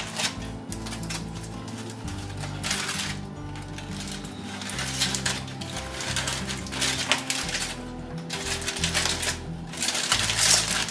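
Aluminium foil crinkling and rustling in bursts as it is pulled open by hand from around a large wrapped brisket.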